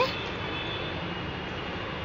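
Steady background noise, an even hiss and rumble with no distinct events, with a faint thin high tone running through it.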